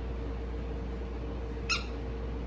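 A small dog gives one short, high yip near the end, over a steady low background hum.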